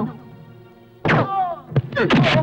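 Dubbed action-film fight sound effects: a heavy hit about halfway through, followed by a falling tone and a sharp crack shortly after, over faint background music.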